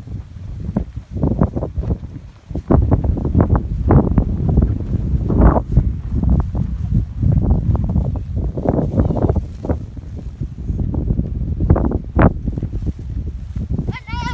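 Wind buffeting the microphone: a loud, uneven low rumble in gusts, growing louder about three seconds in.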